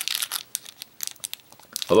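Thin clear plastic candy wrapper crinkling as it is peeled off a hard candy by hand, in irregular quick crackles with a pause in between.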